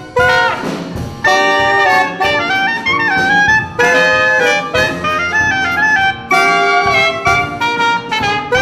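Wind band of brass and saxophones playing a jazz-style tune together, in short held chords broken by brief gaps, with an alto saxophone among them.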